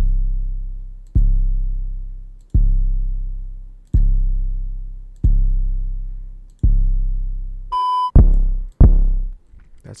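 808 bass samples being auditioned: a deep sub-bass boom with a sharp attack and a long decaying tail, repeated six times about every 1.3 seconds. Near the end comes a short high beep, then two shorter 808 hits close together.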